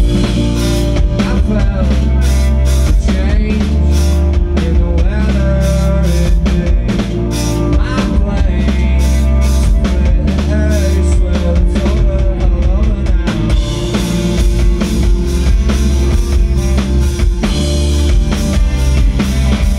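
Emo/post-hardcore rock band playing live: a full drum kit with bass drum and snare comes in suddenly right at the start, driving under distorted electric guitars and bass guitar, loud and steady.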